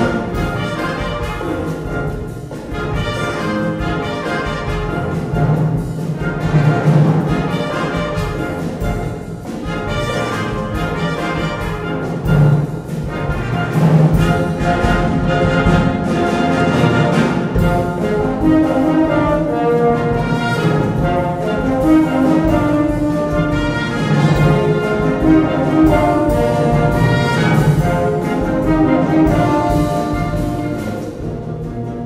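Concert wind band playing a Latin-style arrangement, brass to the fore over a steady percussion beat.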